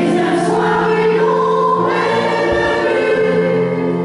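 A choir singing slow, sustained chords, with the harmony shifting to new notes about halfway through.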